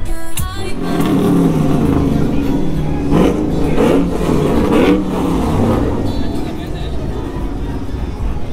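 An SUV's engine running and revving as the vehicle moves off, its pitch rising and falling around the middle, with music and voices mixed in.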